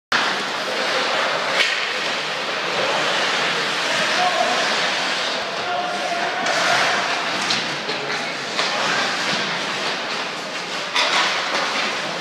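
Ice hockey play heard from the boards: a steady scrape of skate blades on the ice with a few sharp clacks of sticks and puck, and indistinct shouting voices.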